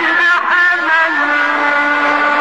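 Male voice chanting Quran recitation in a melodic tajweed style, shifting pitch about half a second in and then holding one long, steady note.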